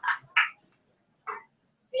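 Three brief, clipped snatches of a person's voice in the first second and a half, with the sound dropping out to dead silence between and after them.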